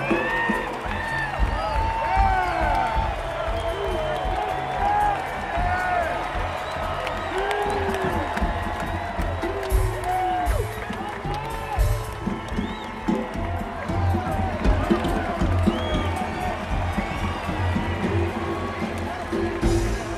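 Large stadium crowd cheering, with many nearby voices whooping and shouting in short rising-and-falling calls over a steady roar.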